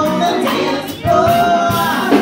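A woman singing live into a microphone with a band of electric bass and keyboard accompanying. Her voice breaks off briefly about a second in, then comes back on a long held note.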